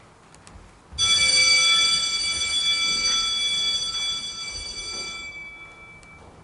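A single struck bell tone ringing out about a second in, with several clear overtones, then slowly dying away over about four seconds.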